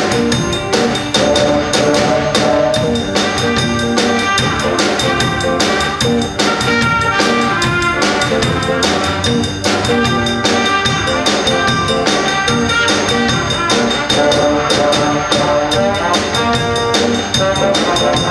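High school stage band, a jazz big band, playing live: saxophones, trumpets and trombones over a drum kit keeping a steady beat.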